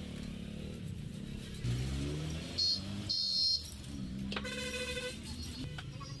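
Passing road traffic: a motor vehicle's engine rises in pitch, two short shrill tones sound a little past halfway through and are the loudest sounds, then a horn blows for under a second.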